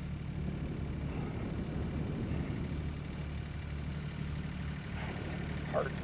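A low, steady engine-like hum that holds constant.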